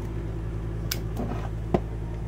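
Rocker switches on a 12-volt switch panel clicking: two sharp clicks about a second apart, over a steady low hum.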